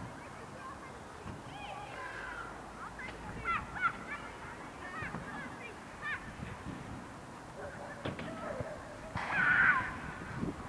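Birds calling: a run of short, quick calls over the first half, then a louder call near the end, over low wind rumble.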